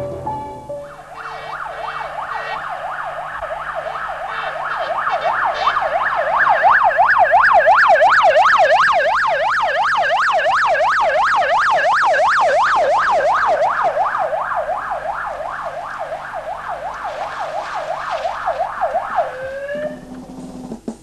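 Emergency vehicle siren in a fast yelp, sweeping up and down several times a second. It grows louder toward the middle and fades again, with a last rising sweep just before the end.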